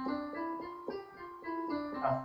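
Keyboard playing the notes of a C triad, a few notes struck in turn and held so they ring together.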